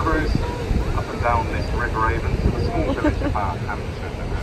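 Indistinct voices of passengers talking on a river sightseeing boat, in short bursts over a steady low rumble.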